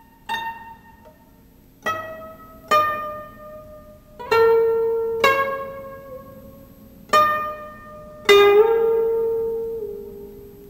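Background music of a plucked string instrument: slow single notes, about one a second, each ringing and fading, one bent upward in pitch near the end.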